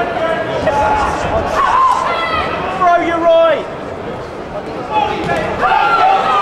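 Spectators' voices shouting and calling out over a steady hubbub in a large hall during a boxing bout, with a few faint knocks.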